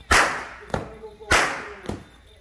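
Jab jab masqueraders' long rope whips cracking: four sharp cracks about half a second apart, the first and third the loudest.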